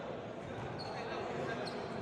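Basketball bouncing on a hardwood gym floor amid voices in an echoing sports hall, with two brief high squeaks, about a second in and near the end.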